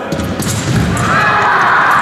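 Footsteps thudding on a fencing piste as the sabre fencers walk back to their en garde lines. About a second in, a steady higher-pitched background sound from the hall sets in.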